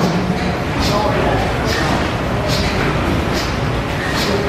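A large antique stationary engine running slowly, a regular beat a little more often than once a second over a steady mechanical din. Voices murmur in the background.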